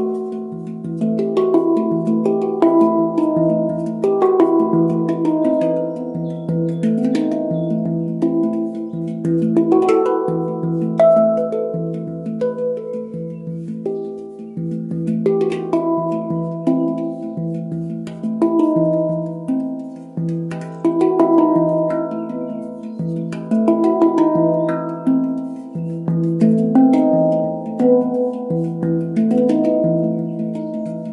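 Handpan tuned to a Romanian Hijaz scale, played with bare hands in a steady rhythmic pattern: quick struck steel notes that ring and overlap, mixed with sharp percussive taps.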